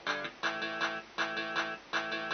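Electric guitar strumming chords in short repeated phrases, with a brief stop between each.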